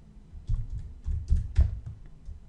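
Typing on a computer keyboard: a quick, uneven run of keystrokes starting about half a second in.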